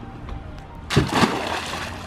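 A person cannonballing into a small plastic kiddie pool of muddy water: one sudden splash about a second in, dying away over most of a second.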